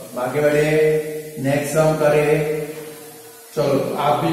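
A man's voice chanting in long held notes, in phrases of about two seconds each.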